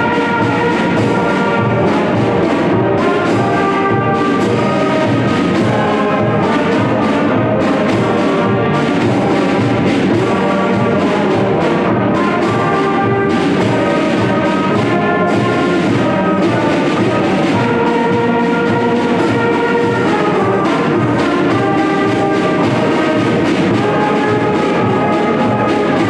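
A student concert band of flutes, saxophones, trumpets, trombones and tuba playing a piece together, with a steady pulsing beat in the low notes.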